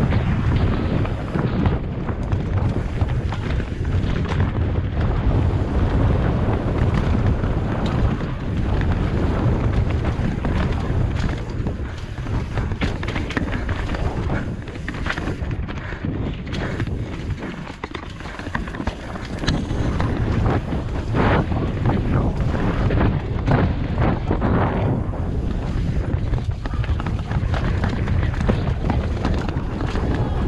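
Mountain bike ridden fast down a rough downhill race trail, heard from a helmet camera: constant wind buffeting on the microphone with tyre noise on dirt and frequent sharp rattles and knocks from the bike over rocks and roots. It eases off briefly a little past the middle.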